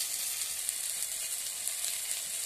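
Chopped tomatoes and spices sizzling in hot oil in a wok: a steady hiss with a few faint crackles.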